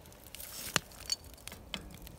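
A metal slotted spoon scraping and clicking in a cast iron skillet while skimming crusty dross off molten lead: a few faint scrapes and sharp clicks, one louder click just before the middle.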